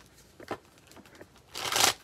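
Tarot cards being handled: a faint tap about half a second in, then a short burst of card rustling near the end.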